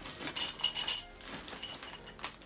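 Flamin' Hot Cheetos poured from the bag into a ceramic bowl: many small crisp clicks and clinks as the pieces land against the bowl, busiest in the first second.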